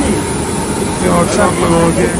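A person talking about a second in, over a steady low rumble of background noise.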